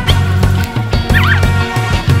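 Background music with drums and a steady bass line. About a second in, a brief warbling sound rises and falls in pitch over it.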